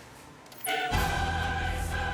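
Choir singing over orchestral music, coming in suddenly just over half a second in with long held chords and a deep bass underneath.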